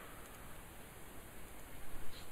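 Steady low background hiss of the recording, with a few very faint ticks.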